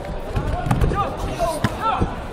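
Dull thumps of taekwondo kicks and feet landing on the foam mat, several in quick succession, the sharpest a little past halfway. Shouting voices sound over them.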